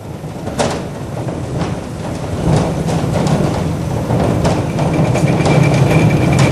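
Sound effect of a wheeled cannon carriage rolling along: a steady rumble with scattered clicks and rattles, growing louder about two seconds in.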